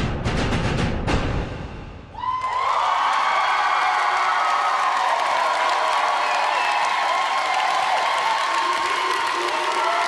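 Music with sharp drum hits ends about two seconds in. Then an audience applauds and cheers steadily.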